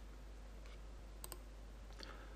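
A computer mouse double-click: two quick clicks about a tenth of a second apart, over a faint low hum.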